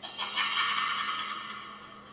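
A high, harsh Halloween scare sound effect that swells in about half a second in and fades away over the next second or so.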